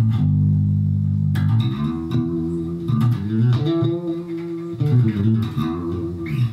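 Four-string electric bass guitar (Sonic, Jazz Bass style) played with vibrato: a low note held for about a second and a half, then a run of plucked notes whose pitch wavers and bends up and back down as the fretting finger pushes the string sideways.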